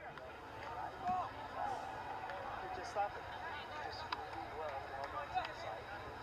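Indistinct voices of players and onlookers calling out over one another at a soccer match, with a single sharp knock about three seconds in.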